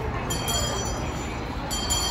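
A hand bell ringing in short repeated rings about every second and a half, twice here, over the steady noise of a busy indoor concourse.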